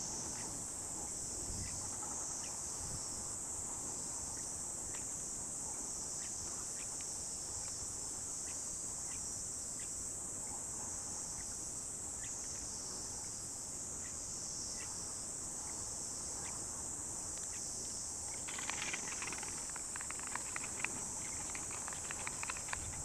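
A steady, high-pitched chorus of insects chirring in the field. Near the end, footsteps on loose tilled soil close by.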